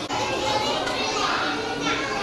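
A classroom of young children chattering and calling out at once, many voices overlapping, with one high voice rising above the rest about a second in.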